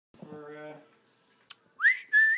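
A woman whistling: a clear note slides upward near the end. Before it comes a short hum of voice, then a sharp click.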